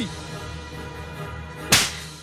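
Film background music holding a low sustained drone, then a single sharp slap about three-quarters of the way through.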